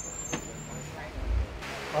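Air from a pedestal electric fan blowing onto the microphone: a low rumble of buffeting about a second in, then a steady airy hiss from about halfway through.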